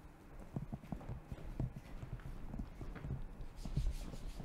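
Footsteps of shoes on a hard floor, a walking pace of about two or three steps a second.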